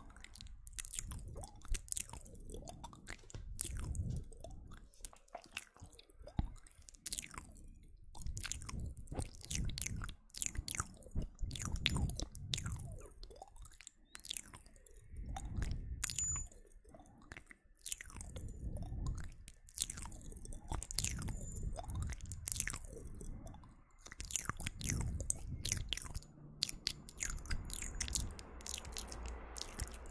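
ASMR mouth sounds made right at the microphone: a dense, irregular run of wet lip and tongue clicks and smacks, with soft low swells every couple of seconds.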